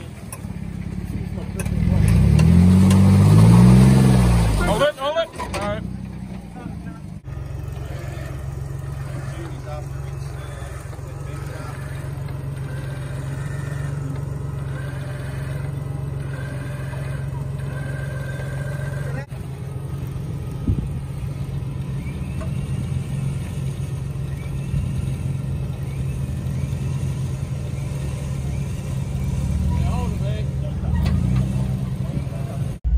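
Jeep Wrangler engine revving, its pitch rising and falling loudly a couple of seconds in, then running steadily at low revs as the Jeep crawls through deep ruts. Faint voices of onlookers in the background.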